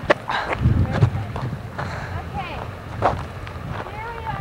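Wind buffeting the camcorder microphone in a constant low rumble with irregular gusts, under brief indistinct voice fragments and a sharp knock about three seconds in.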